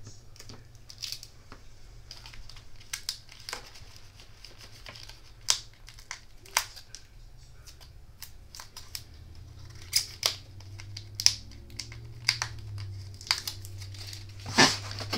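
Scattered small clicks and light rustles of cardstock and foam tape being handled, as double-stacked foam tape squares are pressed onto the back of a paper bow, over a steady low hum.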